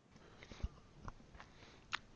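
Faint mouth clicks and soft breathing close to a microphone, with a few small clicks scattered through and a sharper one just before speech begins.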